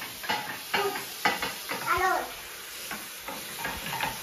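Water running from a bidet tap into the porcelain bowl as a steady hiss, with a few short knocks as wooden sticks bump about in the bowl. A child's voice says "hello" about halfway through.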